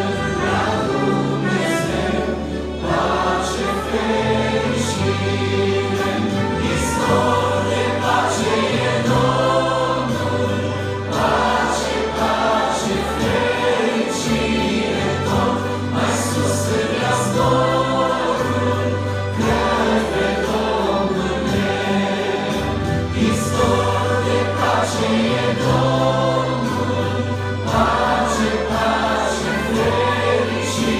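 A small vocal group singing a Romanian worship song in harmony, with amplified accompaniment that includes accordion and trumpet over a steady bass line.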